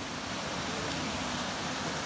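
Mountain stream running over small rocky cascades: a steady, even rush of water.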